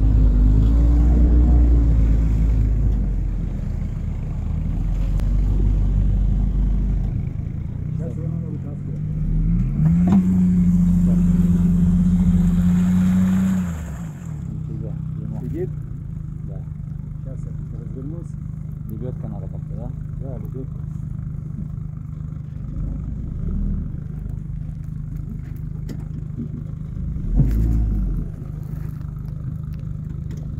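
Tracked all-terrain vehicle's engine revving in the bog, climbing about ten seconds in to a high steady rev held for a few seconds, then dropping back to a steady idle for the second half. A single thump near the end.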